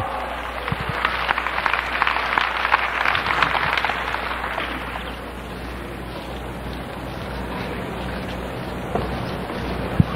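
Congregation applauding, dense clapping that fades away about five seconds in, leaving a steady background hubbub and a low hum.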